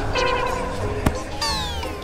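Cartoon-style sound effects: a short held, wavering pitched tone, then a fast falling whistle-like glide near the end.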